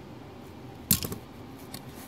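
A sharp metallic click about a second in, then a few fainter clicks: needle-nose pliers being handled and put down.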